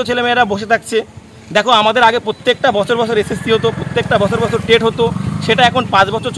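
A man speaking in Bengali to the camera. Under his voice, from about three seconds in until shortly before the end, a motor vehicle's engine passes with a low, pulsing rumble.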